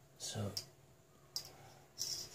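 A steel ruler being set on the drawing paper, with one sharp click about one and a half seconds in.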